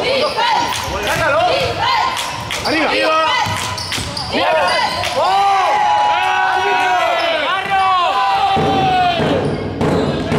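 Basketball game on an indoor hardwood court: a ball dribbling and players' sneakers squeaking on the floor, with a dense run of rising-and-falling squeaks from the middle until shortly before the end.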